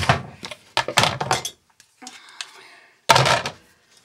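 Kitchen clatter of dishes and household items being handled and set down while tidying, a series of knocks and clinks with the loudest thunk about three seconds in.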